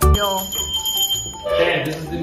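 A small hand bell struck once, ringing with one high, steady tone for about a second and a half before voices come in. It is the classroom signal for pupils who are too loud or naughty.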